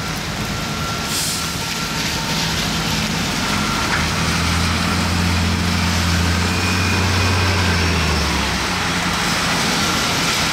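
Gillig BRT transit bus driving off through a wet intersection: a brief hiss of air about a second in, then its engine note grows stronger for a few seconds as it pulls away, over the steady hiss of tyres on the wet road.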